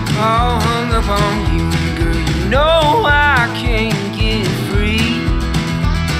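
Country song playing as a soundtrack: guitar over a steady beat, with a bending melody line.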